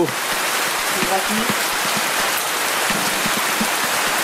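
Heavy downpour: rain falling steadily, an even hiss of drops with no let-up.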